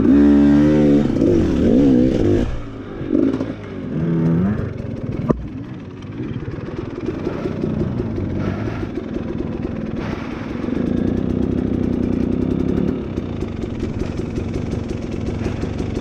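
Dirt bike engine revving up and down in short throttle bursts for the first few seconds, then running more steadily at low revs with clattering over rough ground. A single sharp knock about five seconds in.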